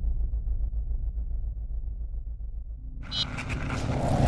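Logo-sting sound effects: a low, pulsing rumble that thins out, then about three seconds in a bright whoosh swells up and grows louder.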